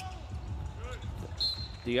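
Basketball court sound during live play: a ball bouncing and low arena rumble. A short, high squeak comes about one and a half seconds in.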